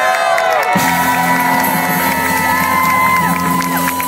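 A live band playing loud music with a trumpet, amid a cheering crowd, with a steady bass line that changes about a second in.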